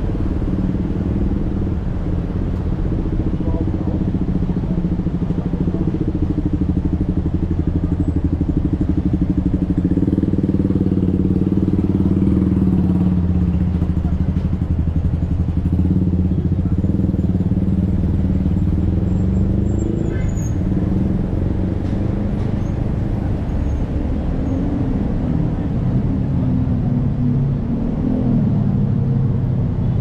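Steady city road traffic: cars and motorcycles passing on a busy multi-lane street, a continuous low engine rumble.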